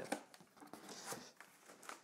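Faint handling of a cardboard box as its top flaps are pulled open, with a few soft knocks and light rustling.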